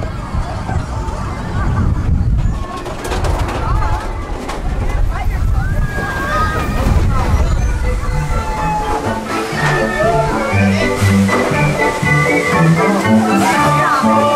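Seven Dwarfs Mine Train coaster cars rumbling along the track, with riders' voices. From about eight seconds in, as the train slows at the dwarfs' cottage, the ride's finale music plays.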